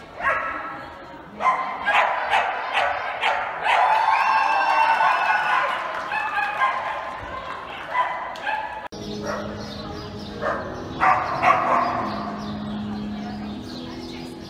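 A dog barking and yipping repeatedly in short, sharp calls, loudest and busiest in the first half, among people's voices.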